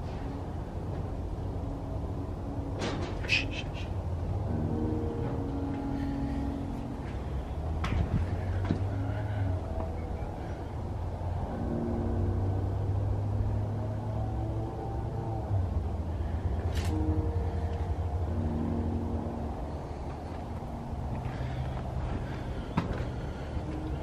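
Wind buffeting the microphone as a steady low rumble, with a few sharp knocks spread through it and faint, held low tones that come and go through the middle.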